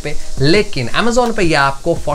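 Only speech: a man talking in Hindi.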